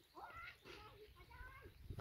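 Faint, distant high-pitched voices in short calls over a low wind rumble.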